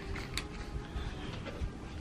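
Fingers picking and pulling at packing tape on a wrapped gift, the paper and tape crinkling and creaking, with one sharp click about a third of a second in. The tape is stuck down hard.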